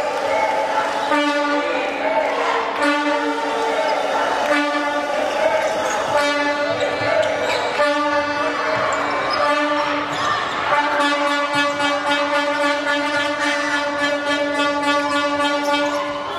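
A horn blowing one steady low note in a series of blasts about a second long, then one held for about five seconds, over the noise of a handball game with the ball bouncing on the court.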